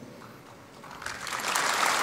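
Audience applause that starts about a second in and builds to steady clapping.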